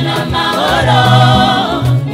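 Gospel choir singing live, a lead voice over the group, with a steady beat and a stepping bass line underneath.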